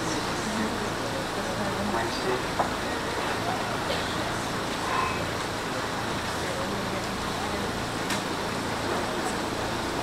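Indistinct low murmur of voices over a steady room noise, with a few faint knocks and clicks.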